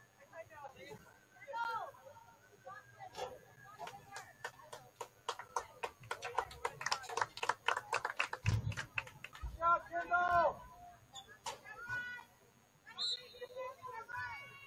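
Voices calling and shouting across a soccer field during a match, with a rapid run of sharp taps in the middle and a loud shout about ten seconds in.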